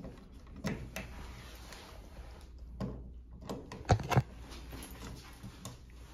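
Scattered light clicks and knocks from hands and tools handling a toggle switch as it is fitted into a metal wall box, the loudest pair about four seconds in.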